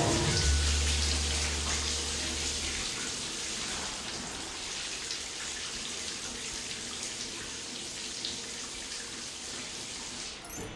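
A shower running: a steady spray of water from the shower head pouring down onto a person beneath it. The sound is loudest at first and eases off a little, with a low hum under it during the first few seconds.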